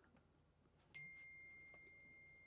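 Near silence, then about a second in a single soft chime: one clear high tone that starts sharply and rings on, fading slowly.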